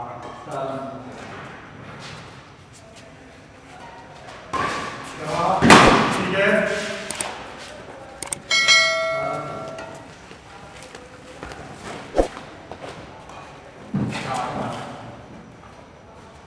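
Badminton doubles rally in a large hall: sharp racket-on-shuttlecock hits and thuds of footwork, with players' voices, loudest about five to seven seconds in. About eight and a half seconds in, an added bell-like notification chime rings for a second or so.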